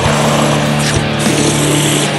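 Blackened drone doom metal: a heavily distorted electric guitar strikes a new low chord right at the start and lets it ring, sustained and dense, with a few low thuds beneath.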